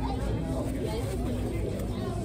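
Indistinct talk from other people in a restaurant dining room, over a steady low background noise.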